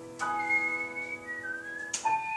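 Live jazz: a held piano chord rings under a high, whistle-like melody that enters about a quarter second in, holds a note, then slides up in pitch near the end.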